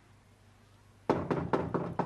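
Knocking on a door to be let in: a rapid series of knocks starts about a second in, after a quiet pause.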